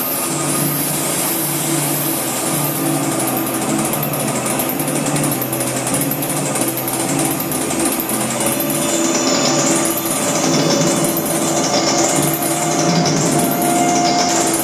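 Live band music in a noisy, buzzing drone passage. A low note pulses steadily under sustained mid tones, and a whooshing filter sweeps up and down in the highs over and over.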